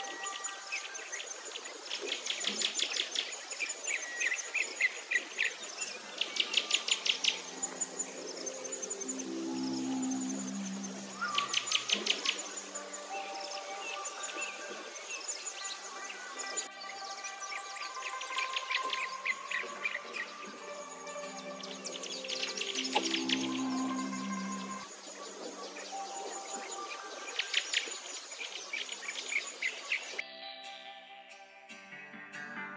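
Calm background music with birdsong layered in: sustained soft tones, bursts of rapid bird trills every few seconds, and a very high chirp repeating about once a second.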